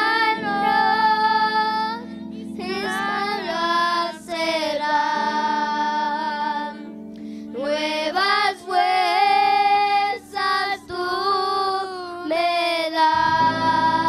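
A group of children singing a worship chorus together, with a woman's voice among them. They sing in phrases with long held notes, over steady accompanying chords that change every few seconds.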